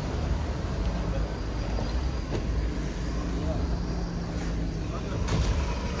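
A car engine running at idle, a steady low hum under the murmur of voices around.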